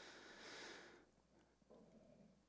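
Near silence: faint room tone with a soft noise in the first second, then dead quiet.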